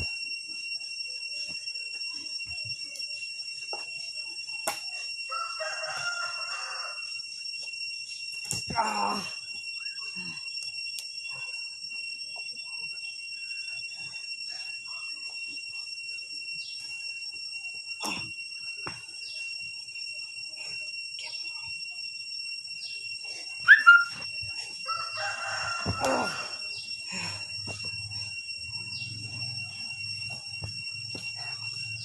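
A few dull thuds of bodies landing on a sheet spread over dirt ground during backyard wrestling throws and jumps, over a steady high-pitched whine. A short, sharp rising cry near the end is the loudest sound, with a couple of longer calls, one early and one right after the cry.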